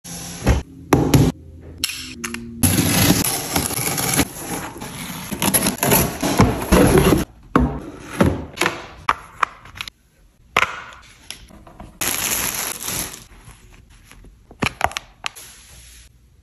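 Unboxing handling noise: a cardboard shipping box and the hard plastic parts of a spin-mop bucket being opened and handled, with sharp clicks and knocks between stretches of scraping and rustling.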